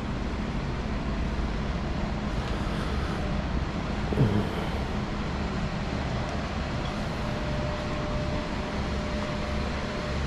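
Steady air-conditioning hum and room noise, even throughout, with no engine running.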